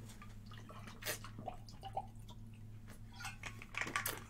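A person drinking water: faint, scattered sips and swallows with small knocks of the cup or bottle.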